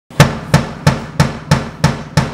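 Drum kit struck on the beat, six even strikes about three a second, opening a song.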